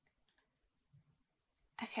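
A single computer mouse click, heard as two quick, sharp ticks a fraction of a second apart as the button is pressed and released.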